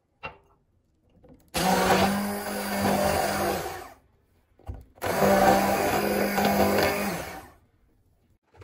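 An 850 W immersion hand blender runs in two bursts of about two and a half seconds each, with a short pause between, blending egg and milk in a stainless steel bowl.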